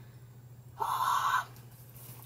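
A woman's short breath, about half a second long, about a second in, over a low steady hum.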